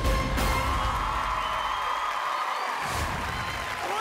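Rock band playing, the singer holding one long shouted note over the band.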